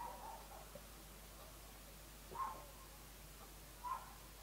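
Faint mouth sounds of a man drinking beer from a glass: a sip at the start, then two short swallowing noises, one midway and one near the end.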